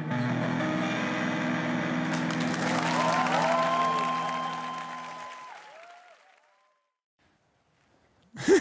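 A final guitar chord ringing out for about five seconds, while audience applause with a few whistles swells from about two seconds in; everything fades away by about six seconds.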